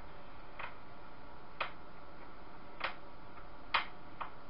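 Four sharp clicks, roughly one a second but not evenly spaced, over a steady low hiss.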